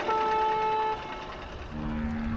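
A steady pitched tone held for about a second, then a second, lower steady tone that begins near the end.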